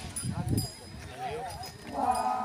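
A gap in the dancers' loud group chant: a low thud early on, then a quavering, wavering call around the middle. The group's held chant comes back in at the very end.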